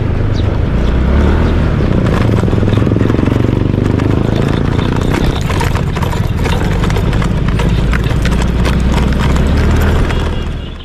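Motorcycle riding along a rough dirt road: a steady engine-and-wind rumble, with scattered knocks from the bumpy surface, more of them in the second half.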